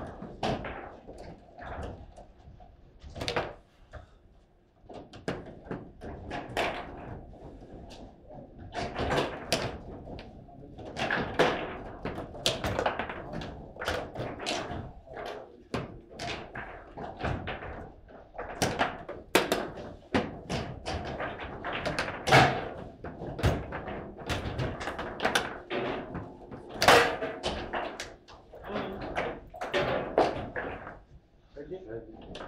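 Table football rally: the hard ball cracking against the players and table walls, and the rods clacking as they are spun and slammed in quick irregular knocks. The rally ends in a hard shot near the end.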